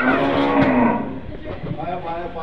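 A zebu cow mooing once: one long call of about a second that dips slightly in pitch.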